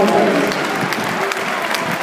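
Crowd applauding.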